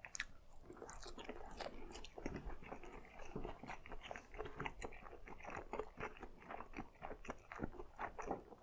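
Close-miked, faint mouth sounds of chewing sauce-glazed eel nigiri with the mouth closed: soft, moist clicks and smacks, several a second, in an irregular rhythm.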